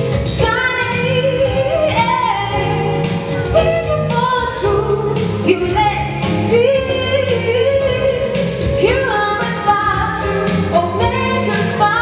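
A woman singing into a hand-held microphone over a jazz-rock accompaniment, with sustained, gliding vocal lines over a steady rhythm.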